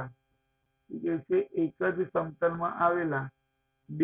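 Speech only: a man's voice explaining a geometry question, starting about a second in after a short silence.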